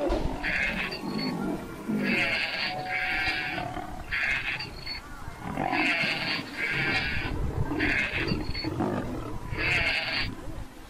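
Lion growling in a series of about eight harsh snarls, each under a second long.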